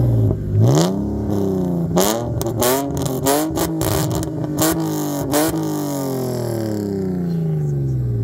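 BMW E46 330xi's inline-six, with headers and the muffler deleted, free-revving while stationary and very loud. The revs climb about a second in and hang high for a few seconds with a string of sharp cracks, which the crew wonder was the rev limiter. Then they fall away slowly toward idle.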